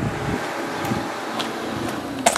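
Wind on the microphone over a steady outdoor background hiss, with a faint click about a second and a half in.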